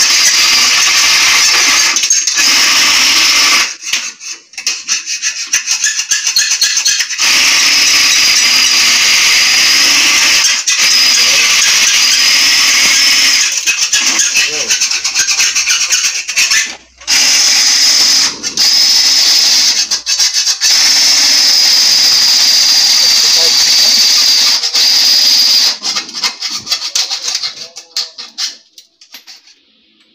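Power drill running in long bursts with a high whine, stopping briefly a few times and breaking off into short spurts near the end.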